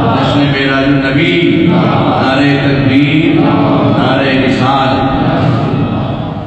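Male voice chanting a melodic devotional recitation, with long held notes stepping up and down in pitch.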